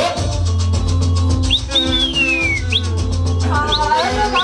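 Dance music playing with a heavy, steady bass line, and a person whistling over it: several short upward whoops and one long falling whistle in the middle.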